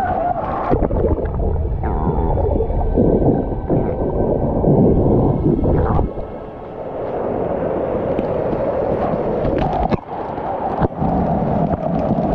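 Waterfall water pouring and splashing straight onto the camera, a loud, muffled rushing with a heavy low rumble. About six seconds in it drops away briefly, then returns as a lighter splashing of water running over rock.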